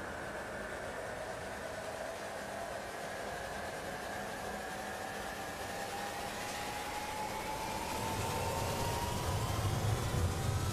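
Cinematic sound-design riser: a steady noisy wash with faint tones that slowly climb in pitch. A low rumble swells in near the end.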